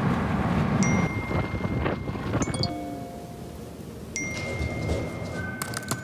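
Chime-like tones: a few held notes, each starting with a sharp tick and ringing on for a second or more, over a low rumble that fades out about halfway through.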